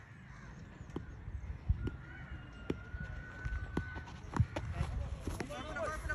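Faint open-air ambience with distant voices and a few scattered light knocks. A thin, faint whistle-like tone holds for about two seconds in the middle.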